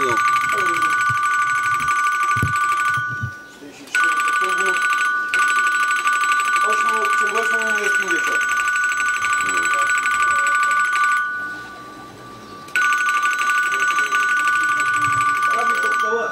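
An electronic telephone ringer giving a steady, warbling two-tone ring. It breaks off briefly about three seconds in and again for a second or two near eleven seconds, with muffled voices talking underneath.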